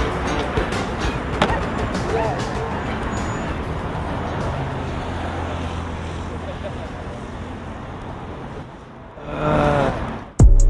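City road traffic with music under it, slowly fading down, and a voice heard briefly just before the end.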